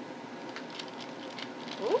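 Paper lining a pan of cooling peanut brittle crinkling and rustling as it is handled, a scatter of short crackles starting about half a second in. A woman exclaims "Oh!" at the very end.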